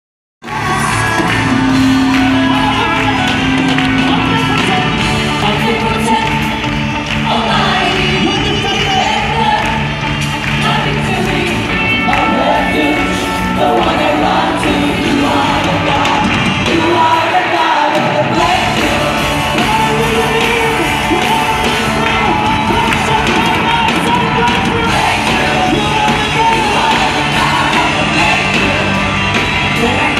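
Live band and singers playing loud worship music through a large PA system in an arena. The bass and drums drop out for about a second near the middle before coming back in.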